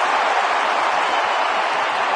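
Ballpark crowd cheering loudly and steadily for a long drive by the home team's slugger.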